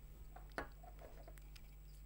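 Quiet room tone with a low hum, broken by one faint click about half a second in and a few fainter ticks after it: small handling sounds as the pencil electrodes wired to the battery are brought to the wet paper.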